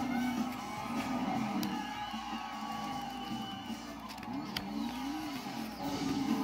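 A film soundtrack playing on a television in the room: music with car and crowd sounds. A couple of sharp clicks come through, about one and a half seconds in and again near the end.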